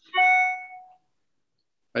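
A single chime: a short, bright ding that starts suddenly and fades out within about a second.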